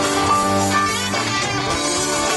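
Live country-rock band playing: electric guitar to the fore over keyboard and drums, with sustained notes and an even level.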